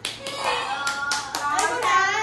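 Hand claps: about six sharp strikes at uneven spacing, with children's voices rising over them in the second half.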